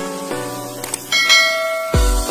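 A bright bell-chime sound effect rings out about a second in, over synthesized outro music with sustained notes.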